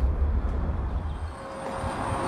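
A deep, steady low rumble that cuts off abruptly about a second and a half in, leaving a fainter hiss with a thin steady tone.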